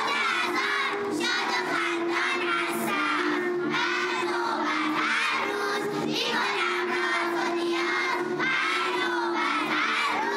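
A large group of young girls singing a devotional song together in unison, loud and lively, their voices partly shouted.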